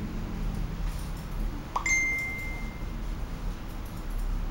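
A single bright ding about two seconds in, one clear tone ringing for about a second before fading, over a low steady background hum.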